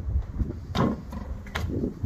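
Trainers landing on wooden park benches during a parkour jump: two short thuds about a second apart, over a low steady rumble.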